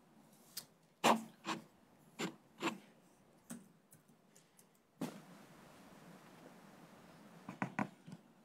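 The promo video's soundtrack is not heard. Instead there are a few short, sharp knocks and taps in a quiet room, then a steady hiss that comes up suddenly about five seconds in, and a quick run of clicks near the end.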